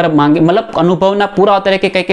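A man talking steadily in Gujarati, with no other sound standing out.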